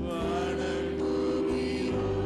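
A man singing a slow, chant-like Tamil worship line into a microphone over sustained instrumental accompaniment.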